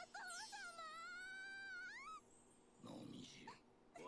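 Faint anime dialogue: a girl's high voice in one long drawn-out cry of "Father!" in Japanese, rising in pitch at its end. A lower voice speaks briefly about three seconds in.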